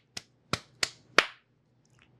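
Hands slapped together four times, short sharp claps about a third of a second apart.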